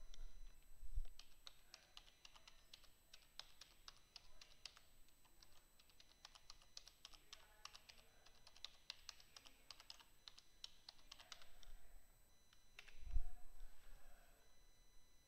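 Computer keyboard typing: a quick run of quiet keystrokes as an email address is entered, with pauses between bursts. Near the end comes a single louder, duller thump.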